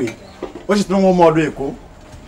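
A woman's voice giving a short, drawn-out spoken reply of assent, held at a fairly level pitch for under a second.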